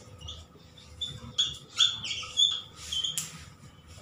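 Whiteboard marker squeaking and scratching across a whiteboard as words are written: several short, high squeaks mixed with scratchy pen strokes.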